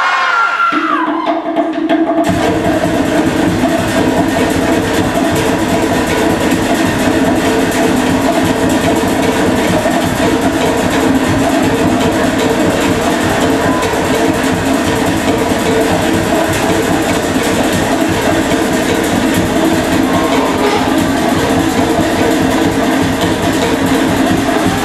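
Loud, fast Polynesian drum music for a fire knife dance, over a long held low tone. The dense drumming comes in about two seconds in and keeps up without a break.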